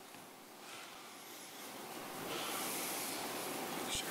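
Soft rustling and shuffling noise in a large hall that grows louder about halfway through, with a single knock at the very end.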